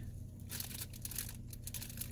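Faint, irregular crinkling of a plastic packaging bag as it is handled and turned over.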